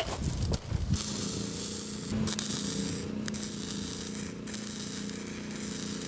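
Flux-core MIG welding arc, 0.030 wire on 3/16-inch steel: a steady crackling hiss from about a second in, over a steady low hum. It is a first practice bead at her starting settings, and she judges it is not going well.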